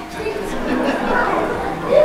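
Several people talking at once, an indistinct chatter of overlapping voices that grows louder shortly after the start.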